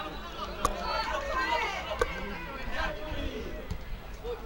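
Indistinct voices chattering, with two sharp knocks, one under a second in and one about two seconds in.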